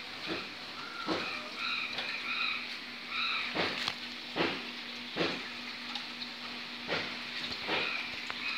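Dishes being washed by hand in a basin: a series of short clinks and knocks of crockery, about seven in all, over a steady hiss of running water and a low steady hum. A few short high chirps sound in the first few seconds.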